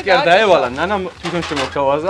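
Excited human voices in drawn-out, wavering exclamations that swoop up and down in pitch, with a short break about a second in.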